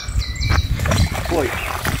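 A neodymium fishing magnet on a rope splashes into a river once, with birds chirping around it.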